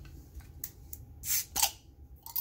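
Hands handling a small plastic bottle opener and a glass beer bottle, with two short scrapes near the end as the opener is brought to the bottle cap.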